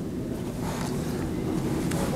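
Room tone: a low, steady rumble with no speech, and a faint tick near the end.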